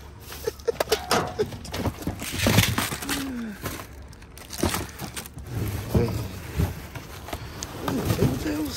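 Rustling and crinkling of plastic candy packaging and cardboard boxes as they are dug through and moved by hand, in irregular bursts, with a few brief indistinct voice sounds.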